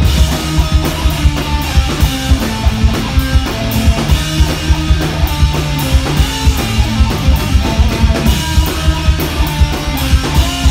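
Live rock band playing: electric guitars and bass over a drum kit keeping a steady, driving beat.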